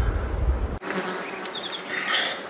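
Flies buzzing close around the microphone, over a low rumble that cuts off abruptly about a second in.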